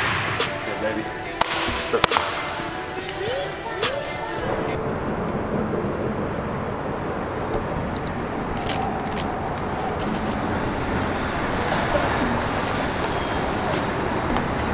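A few sharp knocks in a gym, then, from about four and a half seconds in, a steady outdoor wash of road-traffic noise.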